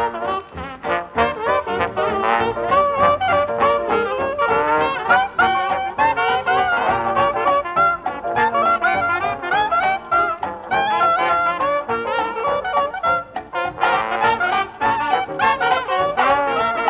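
A traditional New Orleans jazz band playing, with trumpet and trombone leading the ensemble, in an old recording.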